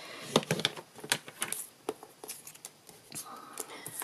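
Paper trimmer's scoring blade being slid down its rail over cardstock, a scattered run of small clicks and light scrapes. The light grey blade scores a crease rather than cutting.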